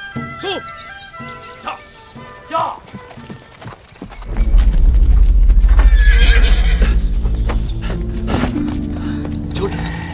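Horses setting off at a gallop, hoofbeats with a horse neighing about six seconds in, under a dramatic music score that comes in loudly about four seconds in.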